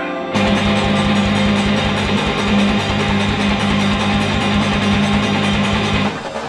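Rock band music comes in loudly about a third of a second in, with a steady drum beat under a held low note and no singing.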